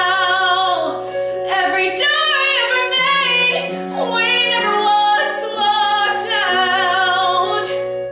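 A woman's solo singing voice, belting several long held notes with vibrato over a steady musical accompaniment; the voice stops near the end.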